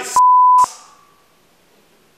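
A censor bleep: one steady, loud, high beep about half a second long that starts and stops abruptly, blanking out a spoken word.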